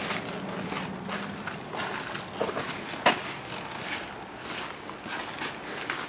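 Footsteps on wet gravel, irregular steps about two a second with one sharper crunch about three seconds in.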